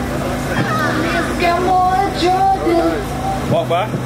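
A voice singing in drawn-out, bending notes over a steady low hum.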